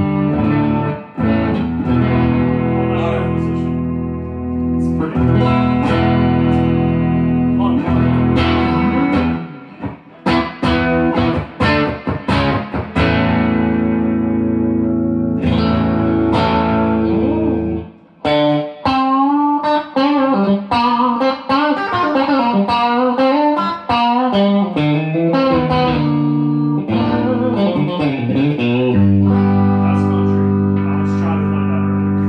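Sterling by Music Man Cutlass electric guitar being played: ringing held chords, then a burst of fast strummed or picked strokes about a third of the way in. A lead run with string bends and vibrato follows in the second half, before it settles back into held chords near the end.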